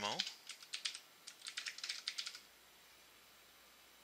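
Typing on a computer keyboard: a few separate keystrokes, then a quick run of them, stopping about two and a half seconds in.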